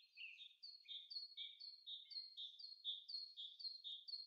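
Faint bird chirping: a steady run of short, high notes, each falling in pitch, repeated about two to three times a second.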